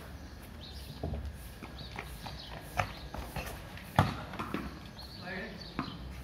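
Sharp knocks and taps from a courtyard cricket game, a hard ball striking bat and stone paving, with the loudest knock about four seconds in. Faint voices sound in the background.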